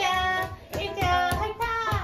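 A toddler girl squealing and vocalizing with delight in short, high-pitched, sing-song cries.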